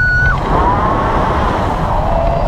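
Wind buffeting the microphone, a loud steady low rumble. A high held cry from a voice cuts off about a third of a second in, and a fainter rising-then-falling tone follows.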